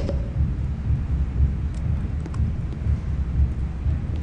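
Low, uneven rumble of room noise picked up by the microphones in a large hall, with a few faint clicks.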